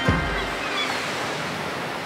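Ocean surf: a steady rush of breaking waves, with music faint underneath.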